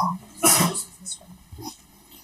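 A man's short, breathy cough or throat-clearing about half a second in.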